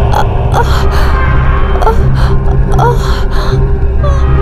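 A woman gasping for air in quick, repeated gasps, struggling to breathe, over a low, steady droning film score.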